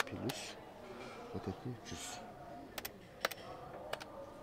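A few sharp clicks of plastic calculator keys being pressed, some in quick pairs, over faint background voices.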